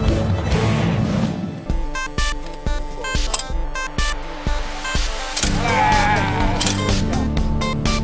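Segment theme music with a steady beat of about two hits a second through the middle.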